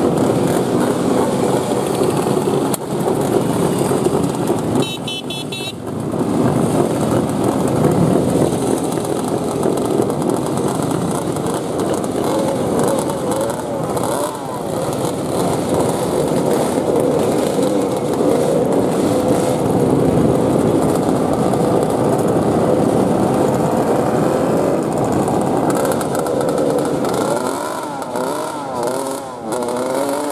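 A procession of vintage Jawa two-stroke motorcycles, some with sidecars, riding past one after another, their engines running together in a dense, continuous drone. Now and then a bike's engine rises and falls in pitch as it is revved.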